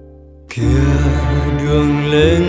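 Vietnamese pop song recording changing over to the next track: a held chord fades out quietly, then about half a second in the next song starts suddenly at full level with a full band arrangement.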